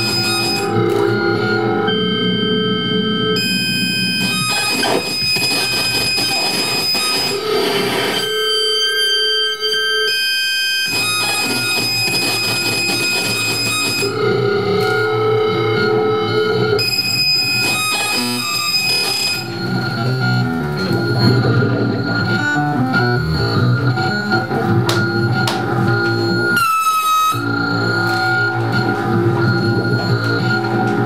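Live electronic noise music played on analog and electronic devices through effects units: dense, distorted layers of steady high and low tones that switch abruptly every few seconds. A short pitch bend comes near the end.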